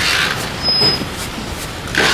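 Busy city street ambience: steady traffic noise with a faint voice in the background.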